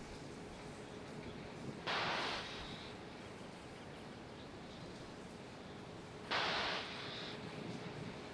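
Falcon 9 on the launch pad during propellant loading: a steady background hiss with a faint steady hum, broken by two sudden, louder bursts of hissing, about two seconds in and about six seconds in, each lasting well under a second to about a second. This is pressure venting from the rocket and the transporter erector's plumbing.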